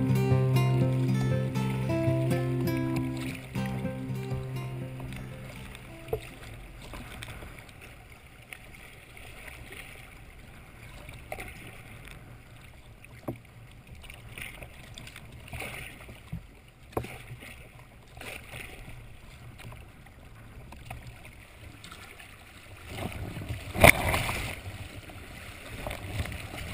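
Background guitar music fades out over the first few seconds. Then comes the faint, steady rush of river water moving past a sea kayak's bow, with occasional small splashes. Near the end there is a louder burst of splashing with one sharp, loud hit.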